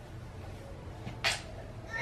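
A toddler's short, high-pitched squeal a little past one second in, followed by the start of another vocal sound at the very end.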